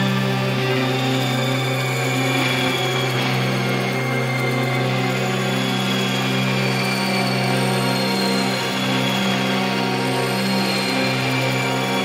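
Instrumental drone doom metal: a heavily fuzzed electric guitar in drop-C tuning holds a low chord without a break. Many overtones ring above it, and faint high tones drift slowly in pitch.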